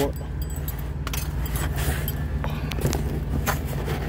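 Scratching, clicking and rustling as fork tines pick at the tape and cardboard of a shipping box, with plastic packing rustling, over a steady low hum of a vehicle cabin.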